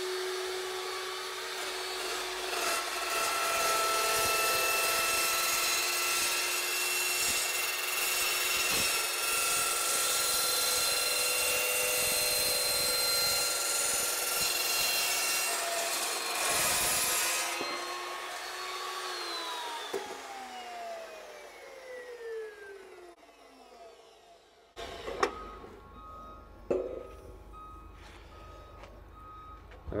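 Evolution metal-cutting chop saw running and cutting through steel cable trunking: a steady motor tone under a harsh cutting noise for about seventeen seconds. Then the saw is switched off and its whine falls in pitch as the blade spins down over several seconds, followed by a couple of light knocks near the end.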